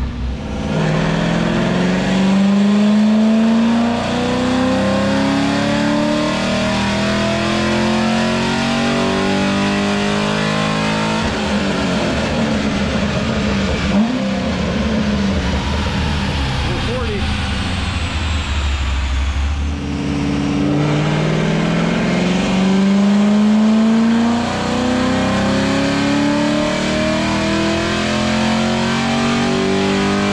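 C6 Corvette V8 on a chassis dyno making two full-throttle pulls, the revs climbing steadily for about three to four seconds each time, once near the start and again about twenty seconds in. Between them the engine runs at lower revs.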